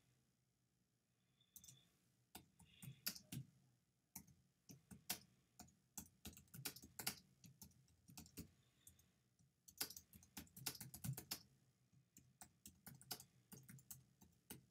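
Typing on a computer keyboard: faint, quick, irregular key clicks in bursts with short pauses between them, starting about a second and a half in.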